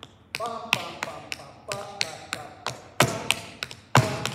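Dance footwork on a stage floor: sharp taps in an even rhythm, about three a second, with a man's voice faintly vocalizing the rhythm between them.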